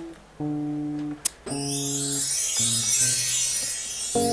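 Guitar playing slow, sustained notes and chords, each ringing for about a second with short gaps between, with a sharp click about a second in and a faint high hiss under the later notes.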